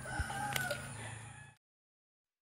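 A rooster crowing faintly over a low steady hum; the sound cuts off abruptly about one and a half seconds in.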